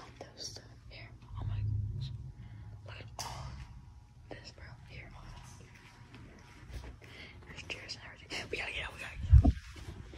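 Hushed whispering voices, in short breathy bursts, with a single loud low thump near the end.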